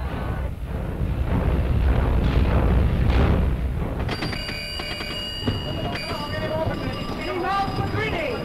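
A loud low rumble, then about four seconds in a ship's engine-room telegraph bell starts ringing with quick repeated strokes.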